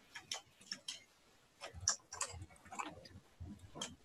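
Faint, irregular clicking of a computer mouse and keyboard, about ten clicks.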